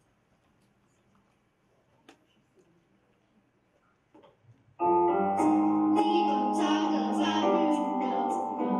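Quiet stage room tone with one faint click, then about five seconds in a song's backing track starts suddenly at full level, with piano and a steady beat of sharp claps about twice a second.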